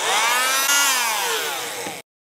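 Electric oscillating bone saw running as it cuts through the mandibular ramus. It makes a loud motor whine that rises in pitch at the start, sags slowly, and cuts off suddenly at the end.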